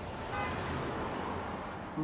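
Busy freeway traffic noise, a steady rush of passing cars, with a brief car-horn toot shortly after it begins.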